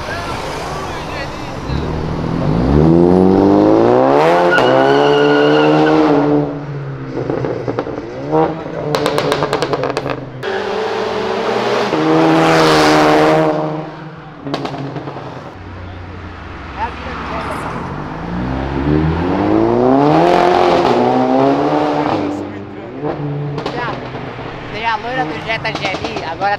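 Car engines accelerating hard at full throttle, their pitch climbing in three separate runs, loudest around the middle, with a few sharp cracks in between.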